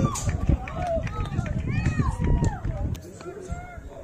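Several voices shouting short calls back and forth, one after another, over a low rumble. The calls thin out and the sound grows quieter near the end.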